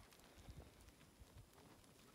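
Near silence, with a faint, irregular patter of hooves from a mob of F1 Dohne ewe lambs walking over dry dirt.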